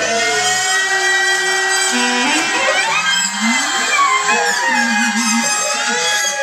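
Free-improvised acoustic music: clarinet, wordless voice and bowed cello holding long notes and sliding between pitches, with no steady beat.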